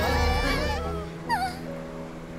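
Cartoon sound effects over dramatic background music: a low rumble that stops about halfway through, then a short high-pitched whimpering cry.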